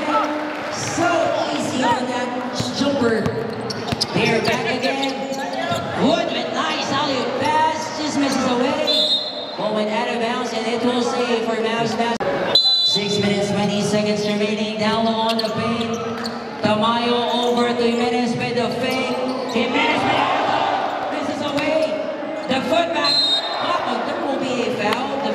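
A basketball bouncing on an indoor court, with crowd voices chattering throughout and echoing in a large gymnasium.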